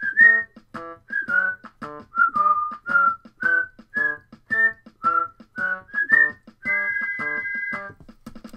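Whistled melody over short, bouncy keyboard chords, ending on one long held whistled note near the end.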